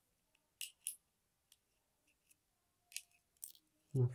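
Faint, light metallic clicks of steel tweezers against the small pins, springs and housing of a lock cylinder as top pins and springs are picked out of the pin chambers: two pairs of short clicks, about half a second in and about three seconds in.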